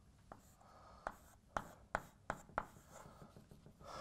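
Chalk writing on a blackboard: about half a dozen sharp taps with short scratches between them, as letters and symbols go down one stroke at a time.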